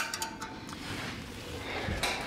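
Faint rustle of a handheld camera being moved, with a soft low thump near the end.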